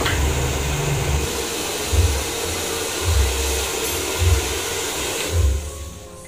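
Handheld electric hair dryer blowing steadily, then cutting off near the end. Background music with a recurring bass beat plays underneath.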